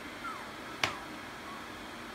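Faint, brief high squeaks from two-week-old puppies, each sliding downward in pitch, with one sharp click a little under a second in, over a steady low hum.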